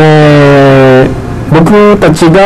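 Two steady, held buzzy tones: a low one lasting about a second, then, after a short break, a higher one near the end.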